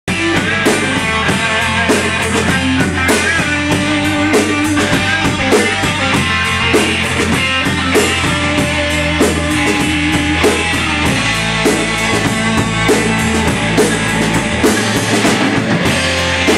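Rock band playing live through amplifiers: two electric guitars, electric bass and drum kit in an instrumental passage over a steady drum beat.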